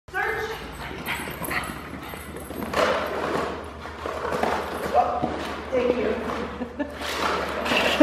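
A pug rummaging with her nose in an open suitcase while searching for a hidden scent, with short noisy bursts of sniffing and handling. People talk quietly in the background.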